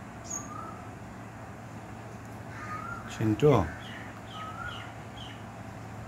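Faint short bird chirps scattered through, over a steady low background hum. About halfway, a voice calls out briefly, the loudest sound.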